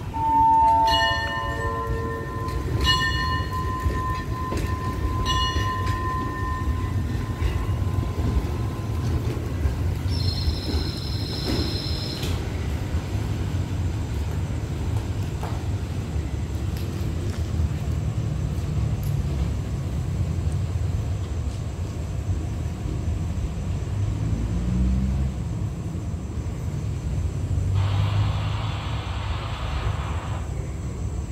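A station signal bell is struck about four times in the first six seconds, each strike ringing on and fading. A shrill whistle sounds for about two seconds around ten seconds in, over the low rumble of a train pulling out of the platform.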